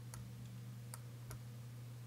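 A few faint, unevenly spaced computer mouse clicks over a low, steady electrical hum.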